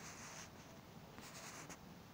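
Near silence: faint room tone with light, scratchy rubbing noises.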